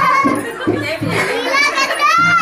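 A group of voices, children's high voices among them, talking and calling out over one another.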